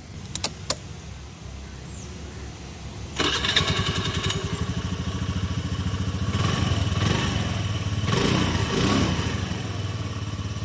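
A few clicks, then a scooter's single-cylinder engine running at idle; from about three seconds in it grows louder as the throttle is opened, rising and falling in a couple of revs.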